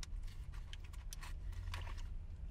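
Paper food packaging rustling and crinkling in irregular small clicks as it is handled, over a low steady rumble inside a car.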